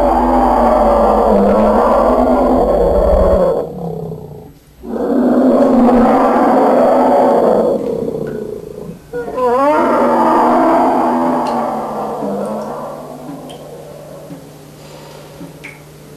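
A tiger roaring: three long roars of several seconds each, the last one fading away.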